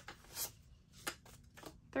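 Paper banknotes rustling as dollar bills are pulled from a cash organizer and counted by hand, a few short rustles spaced about half a second apart.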